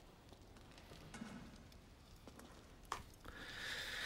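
Very faint room tone with one sharp click about three seconds in; no speech or music stands out.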